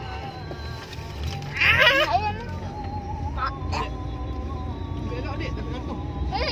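A child's loud, high-pitched squeal with a wavering pitch, lasting about half a second, about two seconds in. Music plays under it, over the steady low rumble of a car cabin.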